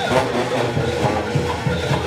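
Junkanoo band music: drums beating a quick, steady rhythm, about four strikes a second, under brass horns.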